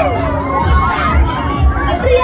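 Many riders screaming and shouting together on a spinning fairground ride, overlapping screams rising and falling in pitch over a low rumble.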